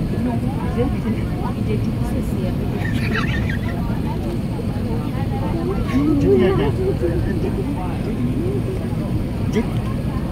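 Steady cabin roar of an Airbus A380 on approach, from the airflow and jet engines, with passengers talking over it, most clearly about three seconds in and again around six to seven seconds.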